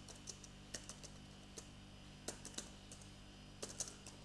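Computer keyboard being typed: faint, irregular keystroke clicks in short runs, over a low steady hum.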